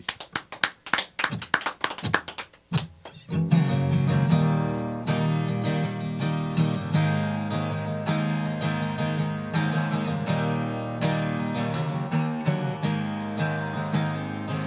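Solo acoustic guitar playing a song's instrumental intro: about three seconds of light, clicky strokes, then full strummed chords ringing out from about three and a half seconds in.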